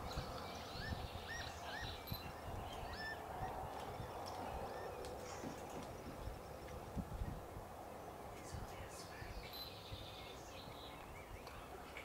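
Small bird chirping: a run of short, quick, arched chirps in the first few seconds and a few more near the end, over steady low outdoor background noise.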